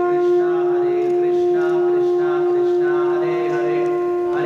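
Conch shell (shankha) blown in one long, steady note that starts abruptly and holds throughout, with voices chanting faintly behind it.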